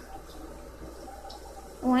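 Faint running tap water, a steady hiss from cups being rinsed out at a sink.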